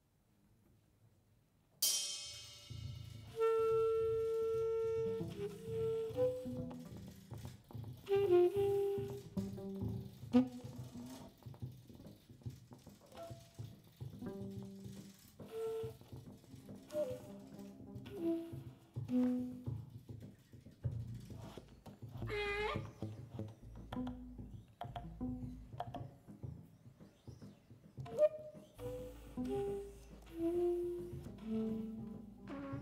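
A jazz quintet starts a tune together about two seconds in, after a moment of silence. Tenor saxophone and trumpet play the melody over piano, double bass and drums.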